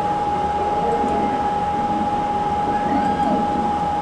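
Steady background hum with a constant high-pitched whine, unchanging throughout, with no other sound events.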